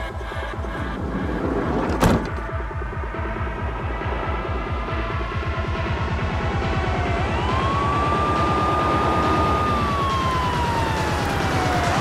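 Dramatic electronic score with a fast pulsing beat and a sharp hit about two seconds in. Over it in the second half, a siren wails: its pitch falls, sweeps up and holds, then falls again near the end.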